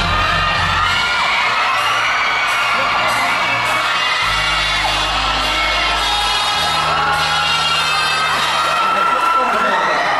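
Background music with long held low chords, under an audience whooping and cheering.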